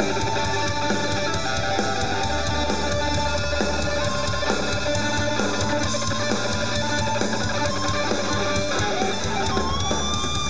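Live rock band playing an instrumental passage: electric guitar lead over bass guitar and drum kit, steady and loud throughout.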